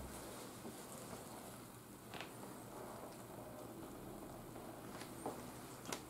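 Quiet room tone with three faint, short ticks: one about two seconds in and two near the end.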